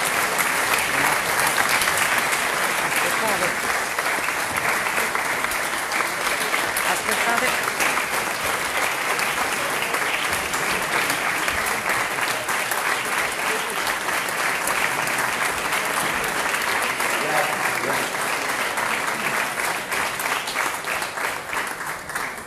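Large audience in a hall applauding, a long steady round of clapping.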